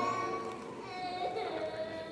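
Organ music: a loud held chord is released at the start and fades away, then softer sustained notes follow from about a second in.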